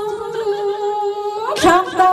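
A woman singing a slow Lạng Sơn folk song (hát sli/then) into a microphone, holding long, steady notes. About one and a half seconds in she breaks off briefly, then slides into a new, lower held note.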